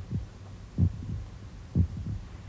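A child's heartbeat heard through a stethoscope: a steady lub-dub, paired thumps a little under a second apart, over a low steady hum.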